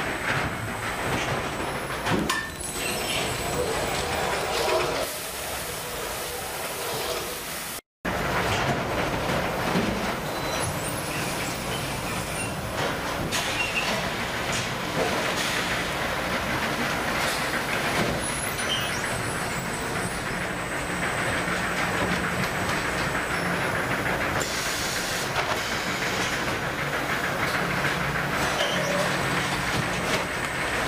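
Automatic bag-palletizing machine running: steady mechanical noise with a low hum and scattered clicks and knocks. The sound drops out for a moment about eight seconds in.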